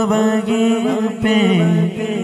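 A man's solo voice singing a naat, an Urdu devotional poem in praise of the Prophet, into a handheld microphone. He sings long held notes that glide between pitches, with short breaks between phrases.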